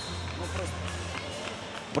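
Short TV-broadcast replay-transition sound effect, a low hum lasting about the first second, over the steady murmur of an arena crowd.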